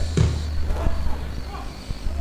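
Open-air football match sound on a nearly empty ground: a steady low hum, a short voice call just after the start, and a couple of soft knocks later on.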